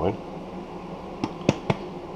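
Three short, light clicks of small objects being handled on a countertop, close together in the second half.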